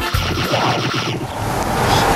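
Whooshing transition sound effect: a rush of noise that brightens toward the end, over the tail of a short intro jingle.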